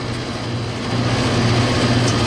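York rooftop HVAC unit running, its compressors and condenser fans making a steady low hum under an even rush of air.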